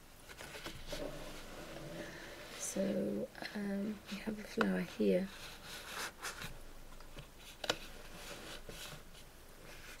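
A woman's voice speaking briefly and quietly for a couple of seconds, with faint scratching and a few light clicks in the pauses.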